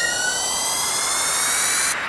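A synthesized riser in the music: a buzzy tone climbing slowly in pitch under a swelling hiss, cutting off suddenly just before the end.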